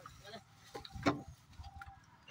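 Short calls and grunts from men straining together to lift a heavy log, the loudest call about a second in, between rounds of rhythmic work chanting.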